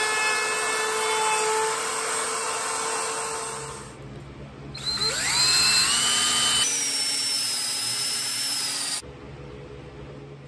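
A router-table bit rounding over the edge of a pine guitar body: a steady motor whine with the rasp of cutting wood, fading out about four seconds in. Then an electric drill spins up with a rising whine and bores into the pine for a few seconds, cutting off sharply near the end.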